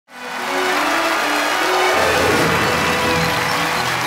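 Television theme music played loudly over a studio audience's applause and cheering, with a bass part coming in about two seconds in.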